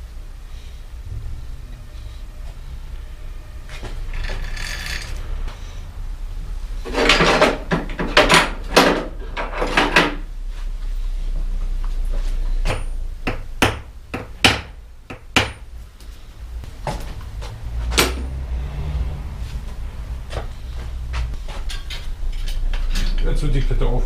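Tools being handled at a workbench: a run of sharp metallic knocks and clinks, several in quick succession partway through, then more spread out.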